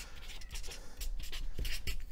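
Pen writing on a sheet of paper: a run of short, irregular scratching strokes as letters are drawn.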